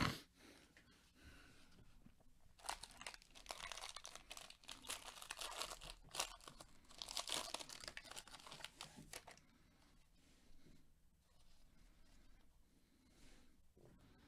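Foil wrapper of a baseball card pack being torn open and crinkled, in irregular bursts of rustling from about three to nine seconds in, then fainter rustles as the cards are handled.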